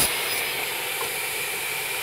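Steady, even hiss of workshop machinery running, with one sharp click at the very start.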